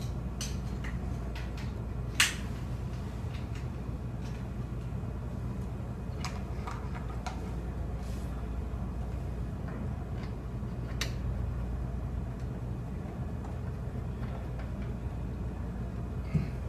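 Small clicks and knocks of hardware being handled and fitted on a camera tripod, with one sharp click about two seconds in and another about eleven seconds in, over a steady low room hum.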